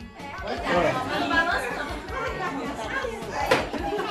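Overlapping chatter of several people in a room, with music in the background and a single sharp knock about three and a half seconds in.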